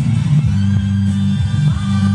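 Music with a strong, sustained bass line playing through the speakers of a Grundig Majestic Council tube console radio-phonograph.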